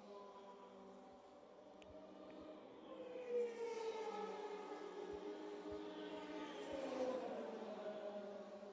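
Open-wheel race car engine heard from a distance as the car accelerates down a straight, its high engine note gliding up and down in pitch with the gear changes. The engine note is faint at first and grows louder from about three seconds in.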